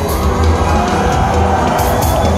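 A live band playing loud through a concert PA, heard from within the audience, with the crowd cheering over the music.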